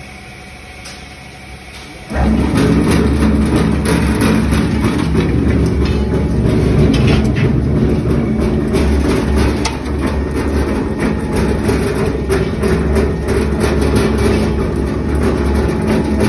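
Ribbon blender mixer switched on about two seconds in: its electric motor and belt drive come up to speed almost at once and then run steadily with a low hum and a dense rattling clatter.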